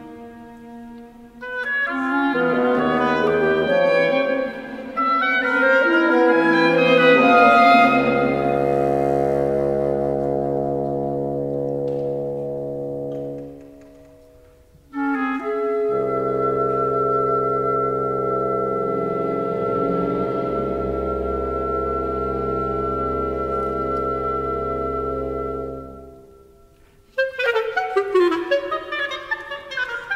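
Oboe, clarinet and bassoon trio with string orchestra playing contemporary classical music. A moving passage gives way to long held chords that fade out twice, each followed by a short near-pause, and a busier, faster passage starts near the end.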